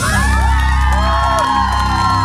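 A live rock band holding a sustained chord, with a crowd cheering and whooping over it.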